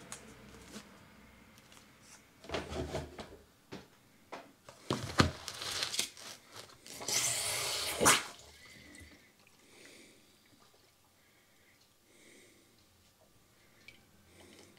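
Plastic seed trays being handled and set down in a larger plastic tray: a run of rustles, scrapes and knocks, the loudest a hissing scrape ending in a knock about eight seconds in, then near quiet.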